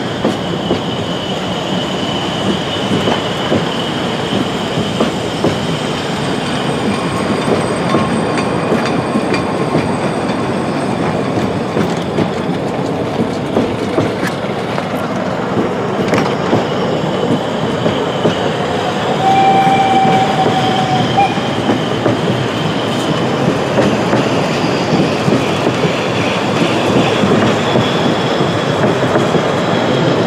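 Rügensche Bäderbahn narrow-gauge passenger coaches rolling steadily past close by, their wheels clattering over the rail joints with a faint high squeal now and then.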